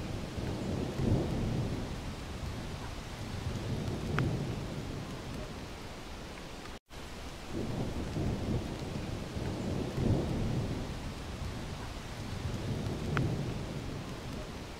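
Waterfall rushing: a steady, deep rumble of heavily falling water, which cuts out for an instant about seven seconds in.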